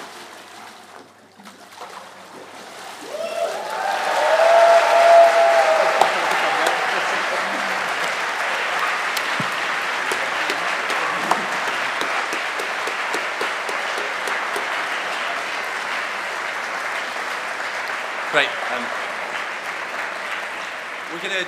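A congregation applauding and cheering a full-immersion baptism: the applause swells from about three seconds in, with a few shouted cheers at its loudest, then runs on steadily.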